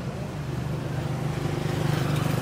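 Small motorcycle engine running steadily as it approaches, growing gradually louder.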